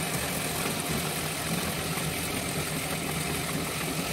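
Ceiling exhaust fan running: a steady hum with an even rushing of air.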